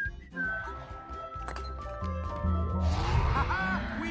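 Animated-film soundtrack: background score with held tones and a low rumble that builds in the second half. A short vocal exclamation comes near the end.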